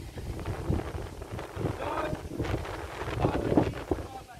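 Wind buffeting the microphone in uneven gusts, with faint voices of people talking in the background.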